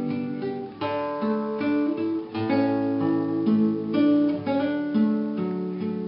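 Acoustic guitar playing an instrumental break between sung verses of a slow Irish ballad, with no voice. Plucked notes start one after another about every half second.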